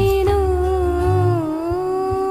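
Home-recorded vocal cover of a Bollywood song: a single voice holds one long note that dips in pitch and rises again near the end, over a backing track with a steady bass.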